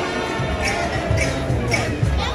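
Street brass band of trombones, sousaphones and trumpets playing, with sustained brass notes over a drum beat about twice a second.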